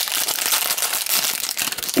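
A metallized foil blind-bag wrapper crinkling steadily as it is pulled open by hand.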